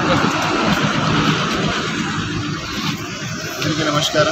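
Roadside traffic noise: vehicles going by on the road, a steady rush with low rumble.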